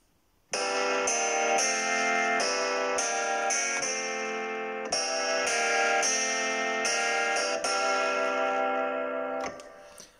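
Chords played on GarageBand's 70s-style electric keyboard sound, triggered from the AWS DeepComposer MIDI keyboard in its automatic chord mode. A run of sustained chords starts about half a second in, changes every half second to a second, and stops shortly before the end.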